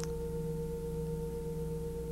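Steady electrical hum in the recording: a clear mid-pitched tone over lower tones, unchanging.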